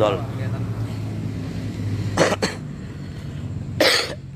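A car engine idling with a steady low hum, and a person coughing twice, the first a double cough about two seconds in, the second near the end.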